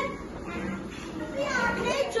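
Speech only: low children's chatter in a classroom, with clearer speaking starting about one and a half seconds in.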